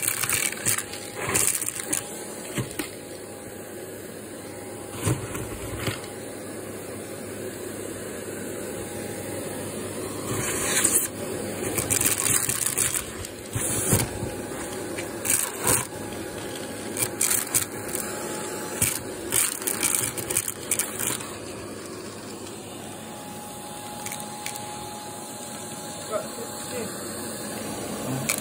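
Shark vacuum cleaner running steadily with a faint whine, its crevice nozzle held at the opening of a vacuum bag. Repeated irregular rattles and scrapes as debris is sucked out through the nozzle and the nozzle knocks on the bag's plastic collar.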